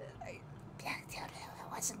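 Soft whispered speech, breathy and barely voiced, from a person muttering under their breath.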